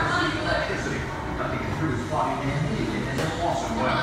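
Indistinct voices talking, no words clear.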